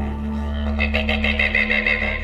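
Didgeridoo music: a steady low drone, joined about two-thirds of a second in by rhythmic pulsing overtones at roughly six pulses a second.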